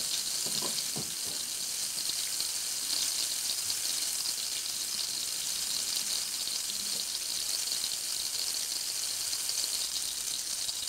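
Tomato slices frying in hot oil in a ceramic baking dish on a gas burner: a steady, high sizzling hiss.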